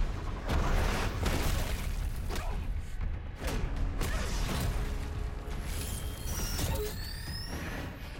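Action-scene sound mix of a superhero fight: a dramatic music score over a deep rumble, with a series of heavy impact hits. Several rising high whines come in near the end.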